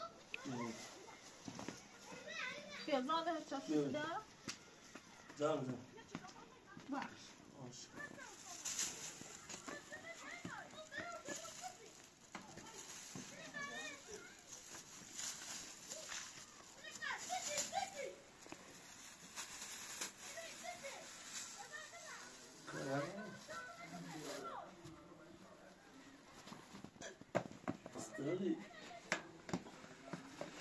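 Adults talking quietly while a baby and a toddler babble and squeal now and then.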